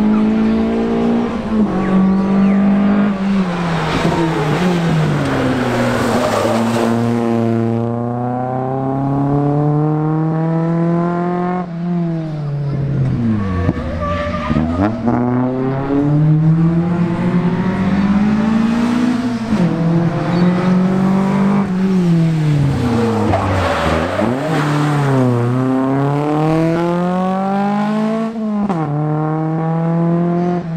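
Rally car engines revving hard on a tarmac street stage. The engine note climbs and drops again and again as the cars accelerate through the gears and slow for corners.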